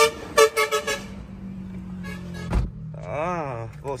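Car horns honking in the first second, then the driver's door of a 2009 Honda Civic shutting with one thump about two and a half seconds in.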